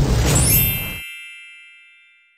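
Intro music with a rising swoosh that stops abruptly about a second in, leaving a bright, bell-like ding that rings on and slowly fades out: a logo-reveal sound effect.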